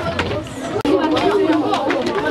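Many children's voices chattering at once, with scattered clicks. The sound drops out for an instant a little under halfway through.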